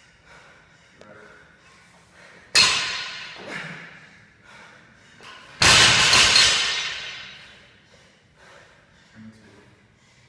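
Loaded barbell with bumper plates dropped onto the rubber-matted floor: two sudden impacts about three seconds apart. The second, about halfway in, is the louder and rings on for over a second.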